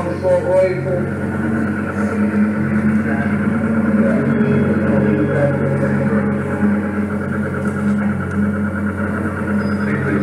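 A live post-rock band holds a steady low drone: a sustained, unchanging hum of notes with a faint wavering tone higher up.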